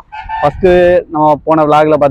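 A man speaking to the camera, with one drawn-out vowel about half a second in.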